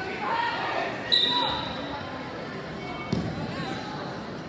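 Spectators calling out during a wrestling bout, with a short, high squeak about a second in. A thump comes a little after three seconds, as the wrestlers go down to the mat.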